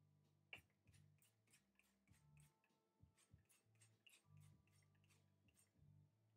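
Near silence: only faint scattered short clicks over a faint low hum.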